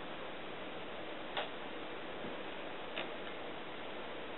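Two short, sharp clicks about one and a half seconds apart, over a steady hiss.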